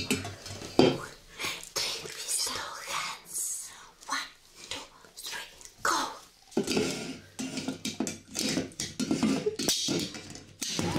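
Sharp taps and clinks of aluminium soda cans being handled and poked with rubbery toy doll hands, among short voice sounds.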